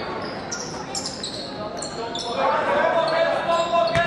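A basketball bounced on a gym floor, a few sharp thuds, with players' and spectators' voices in the hall that grow louder from about halfway.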